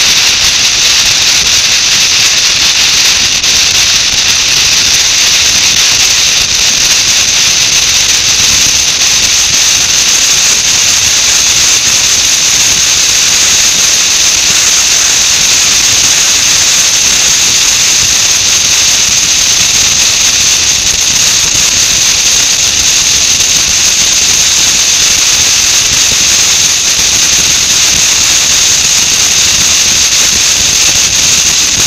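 Loud, steady rushing hiss of wind on the microphone of a camera mounted on a moving motorcycle, with no clear engine note coming through.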